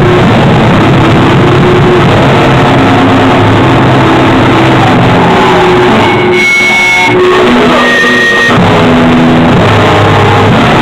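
A live rock band playing loud and distorted: electric guitar held through an amp over drums, overloading the recording. Past the middle the sound thins for a couple of seconds, leaving high held guitar tones, before the full band returns.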